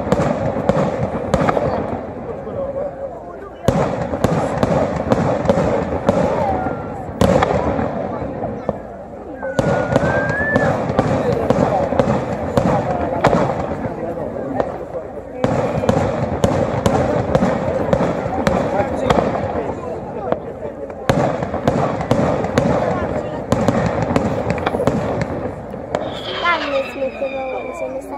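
Daytime fireworks display: dense, rapid runs of sharp firework bangs and crackle. A fresh volley starts with a louder jump about every four to six seconds.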